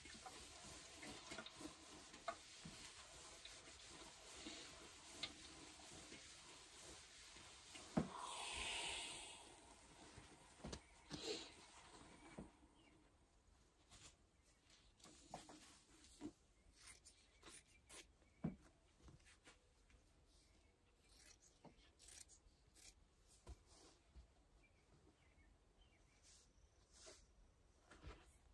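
Faint sounds of fusing interfacing with an iron: a soft steady hiss, swelling into a louder hiss of about two seconds around eight seconds in. In the second half come soft rustles and light taps of the thin interfacing sheet being handled.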